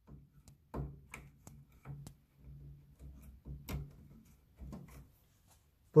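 Faint, scattered clicks and soft knocks of small plastic fan connectors and cables being handled and pushed onto motherboard fan headers, a few clicks a second apart.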